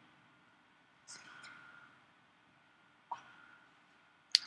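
Near silence: room tone, with a faint brief sound about a second in and a soft click about three seconds in.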